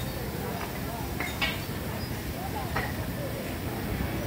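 Street ambience of a pedestrian shopping street: indistinct chatter of passersby over a steady hum of background noise, with three short sharp clicks.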